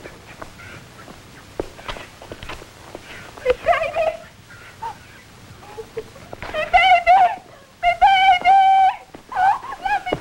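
A woman screaming in a string of high cries that grow louder from about halfway, the longest held steady for about a second near the end.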